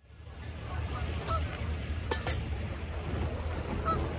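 Outdoor ambience fading in over a steady low rumble, with geese honking twice, about a second in and again near the end.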